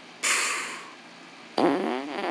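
Vocal sound effects: a short breathy hiss about a quarter second in, fading over about half a second, then a wavering, whiny voice sound starting near the end.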